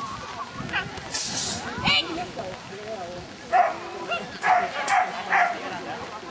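A small dog barking while it runs a course of jumps, four short, loud barks in the last two and a half seconds.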